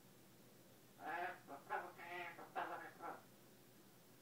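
Double yellow-headed Amazon parrot mimicking human conversation. Starting about a second in, it gives a string of short speech-like syllables, with the pitch and rhythm of talk but no clear words, lasting about two seconds.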